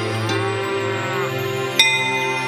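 A water buffalo lowing once, a call of about a second that rises and then falls, over steady background music. Near the end a bell is struck once and rings on.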